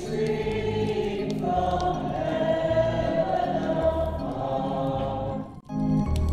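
A choir singing a slow hymn with instrumental accompaniment and a steady, repeating bass line. The sound drops out briefly near the end.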